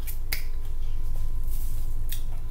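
A single sharp click or snap about a third of a second in, followed by a couple of fainter ticks, over a steady low hum.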